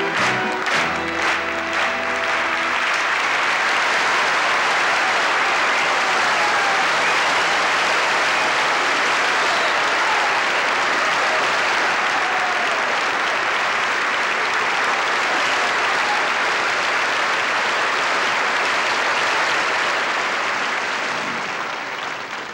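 A large audience giving a standing ovation: long, steady applause. Music is heard ending in the first few seconds, and the clapping fades out near the end.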